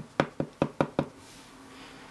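Clear acrylic-block rubber stamp being tapped on an ink pad to ink it: six quick, sharp knocks, about five a second, over the first second.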